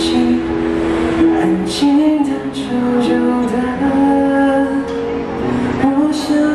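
Live cover of a Chinese pop ballad: a singer's voice over acoustic guitar and keyboard, with occasional sharp hand-percussion strikes.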